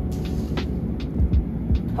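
Background music with a steady low beat.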